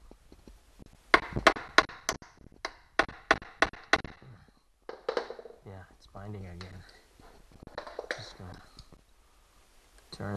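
Small hammer tapping a steel screw extractor (EZ-out), about ten quick, sharp taps at roughly three a second beginning about a second in, driving it into a broken screw in a leaf blower's engine block because the extractor is binding. Low muttering follows in the second half.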